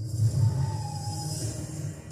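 Film trailer soundtrack played from a TV and picked up by the microphone: a steady low rumble under a high hiss, with a faint tone sliding down in pitch about half a second in.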